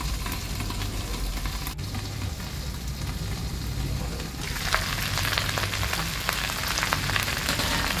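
Chinese kale frying in hot oil in a covered wok, a steady sizzle. About four and a half seconds in, the sizzle turns louder and brighter as the lid comes off.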